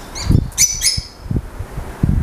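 Birds chirping: a quick run of short, high chirps that sweep downward, bunched in the first second, over low rumbling noise.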